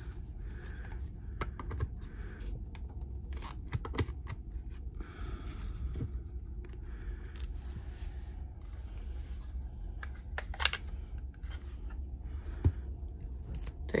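Sleeved trading cards being handled and set down on a desk: scattered light scrapes and clicks of plastic sleeves, with two sharper clicks in the last few seconds.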